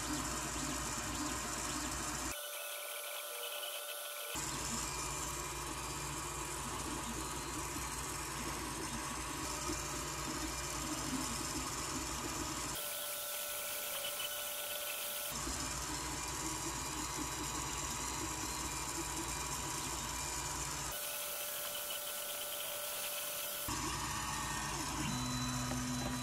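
Creality Ender 3 3D printer running a print: steady whine from its cooling fans with the whir and buzz of the stepper motors moving the print head. The sound jumps abruptly three times, about two, thirteen and twenty-one seconds in, losing its low hum for a couple of seconds each time.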